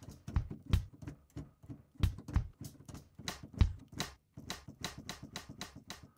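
Drum one-shot samples sliced from a stem-split song's drum track, triggered one after another from a keyboard while they are auditioned. The hits are short and irregularly spaced, several a second, some with a low thump and others thin ticks.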